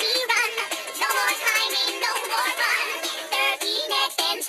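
Children's counting song: a high, synthetic-sounding singing voice over an upbeat backing track with a steady beat.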